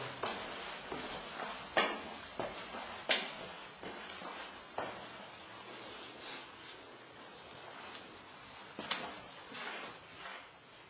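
Footsteps climbing stairs: single knocks at uneven intervals of about one to two seconds, over a steady background hiss.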